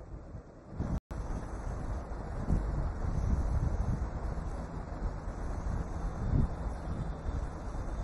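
Rumbling, wind-like noise on an open microphone line, with a brief cut-out about a second in.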